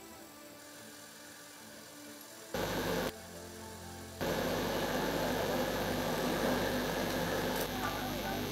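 Field sound from a crowd working in earthquake rubble, voices and commotion that are faint at first and grow louder and denser about four seconds in. A faint steady music bed runs underneath.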